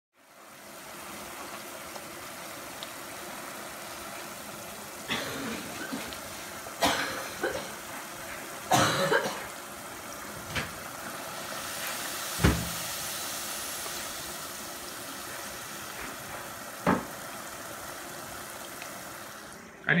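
Hot oil in a pot sizzling steadily as fries deep-fry, broken by about six short, sudden louder sounds.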